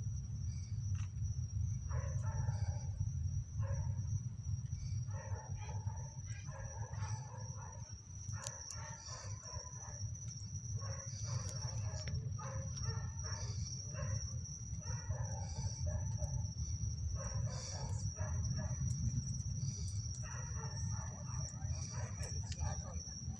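Deep, unsteady low rumble of the Artemis I Space Launch System rocket climbing on its solid rocket boosters and core-stage engines, heard from many kilometres away.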